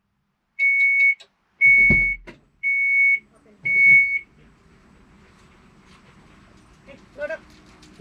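Minivan's power liftgate opening: four high warning beeps, evenly spaced about a second apart, with a low thunk during the second beep.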